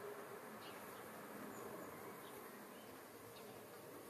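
Quiet outdoor background with a faint steady buzz and a few faint, short, high chirps.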